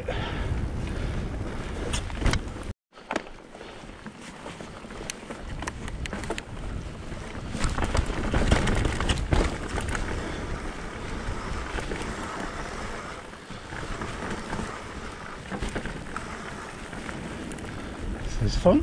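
Mountain bike rolling over a rough grassy track, with wind buffeting the microphone and frequent small clicks and rattles from the bike over bumps, growing louder around eight to ten seconds in. The sound cuts out completely for an instant about three seconds in.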